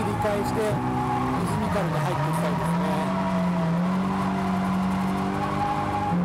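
Nissan Silvia drift car's engine heard from inside the cabin during a drift, held at high revs; its pitch dips briefly about two seconds in, then climbs back and holds steady.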